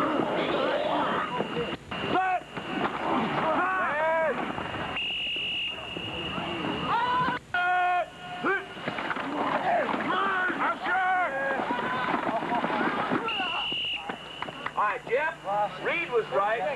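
Players and coaches shouting across a football field during a scrimmage play, with a few sharp knocks. Two short whistle blasts sound, about five seconds in and again about eight seconds later.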